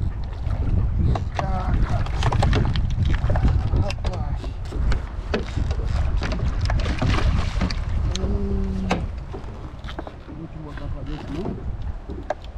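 Wind buffeting the microphone, with water splashing in short sharp bursts as a hooked snook thrashes at the surface beside the boat next to a landing net.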